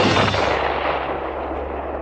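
A single rifle shot: a sharp crack that dies away in a long echoing tail over about two seconds.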